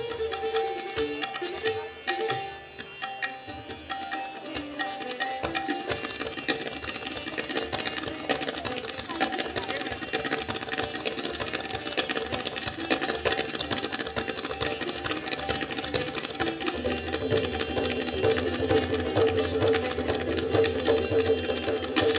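Live Indian classical instrumental music: fast, dense plucked-string playing over a steady drone, with tabla accompaniment that grows stronger in the last few seconds.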